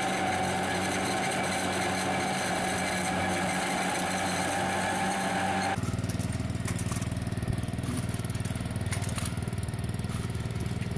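Onion harvesting machine running, a steady hum with a high whine as its roller conveyor carries onions. Near the middle this cuts abruptly to the fast, even putter of a walk-behind vegetable transplanter's small engine, with light clicks from the planting mechanism.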